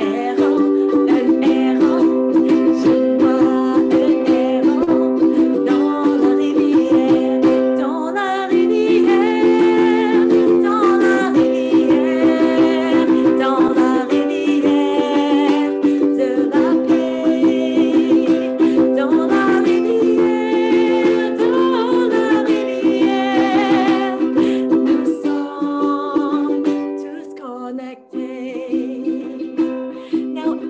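Ukulele strummed in a fast, even rhythm with a woman singing a children's song over it. Near the end the playing quietens.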